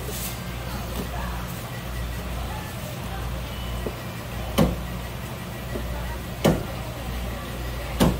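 Kitchen knife working an olive flounder fillet on a wooden cutting board, with two sharp knocks on the board, one past the middle and another about two seconds later. A steady low machine hum runs underneath.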